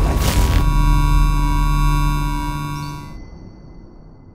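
Electronic logo sting for a TV show intro: a whooshing hit, then a held synthesized chord that cuts off about three seconds in, leaving a faint fading tail.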